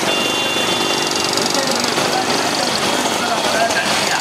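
Engines of a pack of motorcycles running close together, with men's voices shouting over them.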